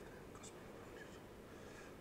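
Near silence: quiet church room tone, with a couple of faint small clicks about half a second and a second in.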